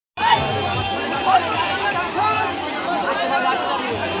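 Crowd noise: many voices talking and calling out at once, steady throughout.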